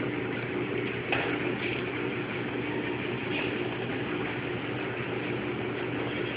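A machine running steadily: a constant drone with a low hum, and a single knock about a second in.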